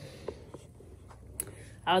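Quiet room with faint rustling and a few small clicks, one sharp click a little over a second in; a woman's voice starts again just before the end.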